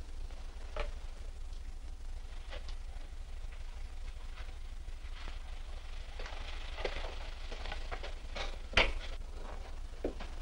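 Old film soundtrack with a steady low hum and faint crackle, with scattered faint knocks, more of them in the second half, and one louder knock a little before the end.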